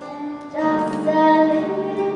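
A young female singer performing a German song, holding long notes. A new sung phrase starts after a brief dip about half a second in.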